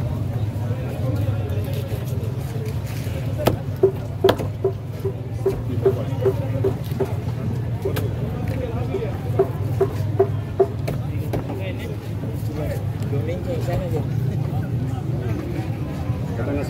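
Heavy knife chopping crosswise cuts into a whole skipjack tuna on a wooden block: a run of sharp knocks, some quick and evenly spaced, through the middle of the stretch. Market crowd babble and a steady low hum run underneath.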